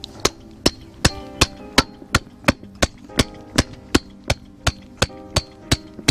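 Claw hammer driving a wooden stake into the soil, in sharp, even blows about three a second.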